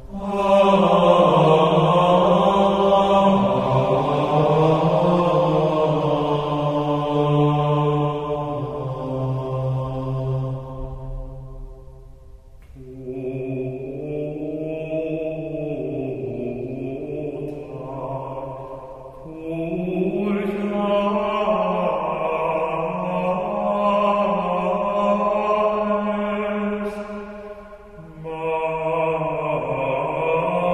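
Gregorian chant: voices singing one melodic line in long, sustained phrases, separated by short pauses for breath.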